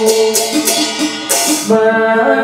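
Buddhist liturgical chanting held on long sustained notes that step in pitch, over a bright rattling shimmer from hand percussion that stops shortly before the end.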